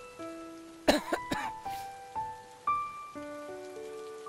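Slow background music of sustained single notes. About a second in, a man coughs briefly a few times as he swigs neat whisky from the bottle.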